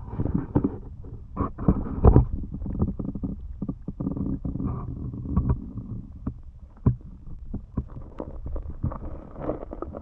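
Muffled underwater sound picked up by a submerged camera in river water: a low rumble of moving water with irregular knocks and clicks, the sharpest cluster about two seconds in and a single sharp knock near seven seconds.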